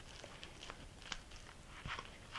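Faint, scattered soft scrapes and squishes of a spatula spreading a stiff cream cheese and feta filling across a flour tortilla.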